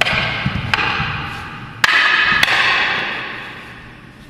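Sharp clacks of a wooden bo staff striking metal sai, about four blows: one right at the start, then three more about a second and a half apart. Each clash rings out loudly and fades slowly in the hall's echo.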